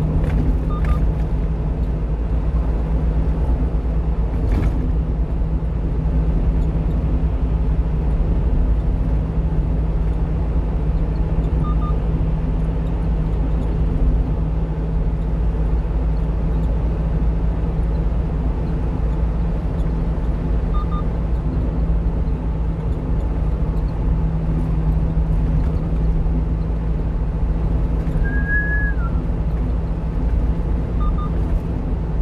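Steady engine and road drone inside a moving 1-ton box truck's cab at highway speed, with a low hum throughout. Faint short double beeps come about every nine seconds.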